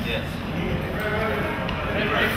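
Men's voices talking indistinctly over a steady low hum.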